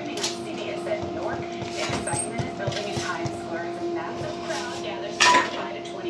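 Clinking and clatter of dishes and utensils behind a pizza counter over a steady hum, with a sharper knock about five seconds in.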